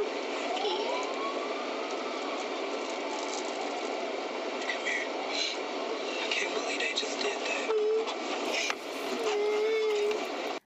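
Muffled, indistinct voices over a steady noise inside a police patrol car, with a short held tone late on and a longer one near the end.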